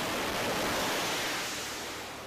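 F/A-18 Super Hornet jet engines at full power during a catapult launch from a carrier deck: a loud, even jet roar that slowly fades as the aircraft moves away down the deck.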